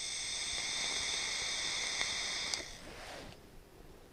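Pipe-shaped e-cigarette hissing steadily as air is drawn through it in one long pull, which stops about two and a half seconds in. A softer breath follows as the vapour is blown out.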